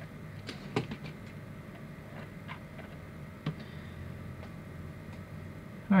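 Scattered light clicks and taps of small hard-plastic action figures being picked up and moved off a display base, the sharpest about a second in, over a faint steady hum.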